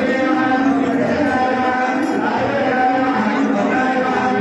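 A man chanting temple mantras into a microphone, in long, held, sung tones.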